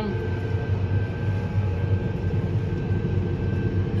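Tractor-drawn crop sprayer at work, heard from inside the cab: a steady low engine drone with faint steady higher tones running through it.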